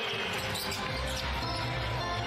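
Basketball game broadcast audio: a basketball bouncing on the hardwood court, with arena music playing underneath.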